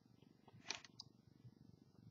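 Near silence: room tone, broken by one faint short sound and a tiny click within the first second.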